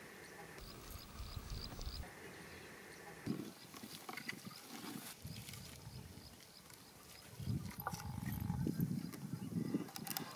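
Steel ladle stirring a thick curry in a metal pan over a wood fire, with a few sharp clicks of the ladle against the pan. Low rumbling swells come and go, loudest in the last couple of seconds.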